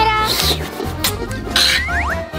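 Children's background music with a steady beat, overlaid with short cartoon-style sound effects: two brief hissy swishes and a quick rising whistle-like glide near the end.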